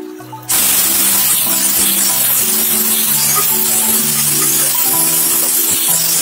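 Chopped tomatoes and onions frying in oil in an aluminium pan as they are stirred with a wooden spatula: a loud, steady sizzle that starts suddenly about half a second in. Background music with held notes plays under it.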